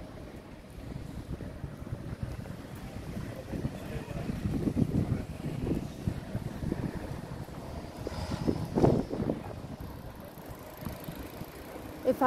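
Town street ambience: road traffic going by, with wind buffeting the microphone and a louder surge about nine seconds in.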